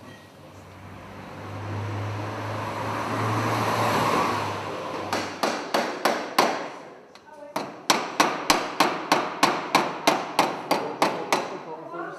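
Hammer blows on sheet metal at a workbench, sharp and ringing. A few strikes come about five seconds in, then after a short pause a steady run of about four blows a second. Before the hammering there is a low hum and a swelling rush of noise.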